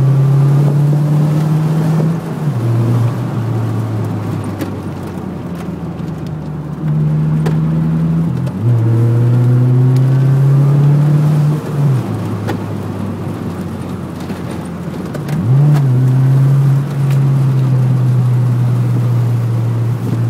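Toyota MR2 AW11's mid-mounted four-cylinder engine, heard from inside the cabin, pulling hard on the throttle and then lifting off, three times. The engine note is loud and higher near the start, again about eight and a half seconds in, and again about fifteen and a half seconds in. Between those it drops lower and quieter.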